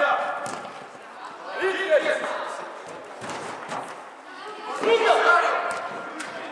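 Shouting from players and coaches echoing in a large indoor sports hall during a youth football match, with a few sharp thuds of the ball being kicked.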